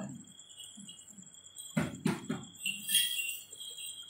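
A cluster of small metal jingle bells ringing on with a steady high tone, shaken again about three seconds in. Two sharp knocks come a little before two seconds in.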